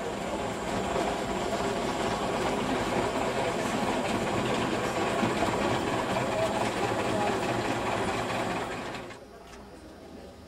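Vintage charabanc driving past on cobbles, its engine running with a mechanical clatter, mixed with people's voices. The sound drops away suddenly about nine seconds in.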